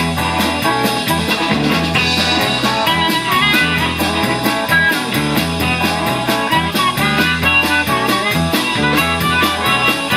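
Electric blues band playing an uptempo rock-and-roll number live: a harmonica played through a hand-held microphone over electric guitar, electric bass and drums, with a steady driving bass line.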